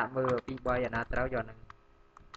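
Separate clicks of computer keyboard keystrokes, heard under a voice speaking for the first second and a half. After that a few more keystrokes come, spaced apart, as a typed router command is backspaced away.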